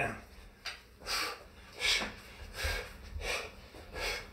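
Heavy breathing from exertion during plank walks: about five short, forceful exhalations through the mouth or nose, coming a little under a second apart.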